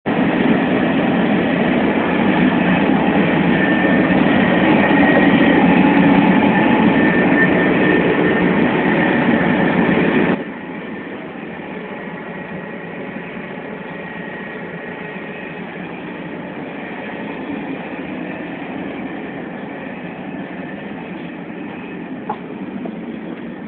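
Running noise of a TGV high-speed train heard from inside, loud in the gangway between cars, with a faint high whine. About ten seconds in it drops suddenly to a quieter, steady rumble.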